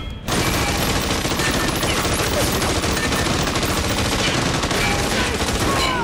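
Dense, continuous rapid gunfire, many shots overlapping in a sustained fusillade, starting suddenly a moment in.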